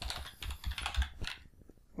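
Typing on a computer keyboard: a short, irregular run of keystrokes.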